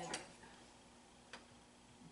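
Quiet room tone with a steady low hum. A voice trails off at the very start, and two faint clicks fall, one just after it and one more than a second later.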